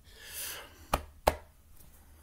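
A soft breathy hiss, then two sharp taps close to the microphone about a third of a second apart, the second louder.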